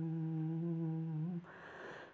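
A singer holds one long, steady note at the end of a line of a Pà Dung folk song, which stops about 1.4 s in. A soft breath follows before the next line.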